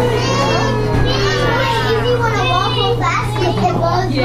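Several young children shouting, squealing and babbling as they play, their high-pitched voices overlapping.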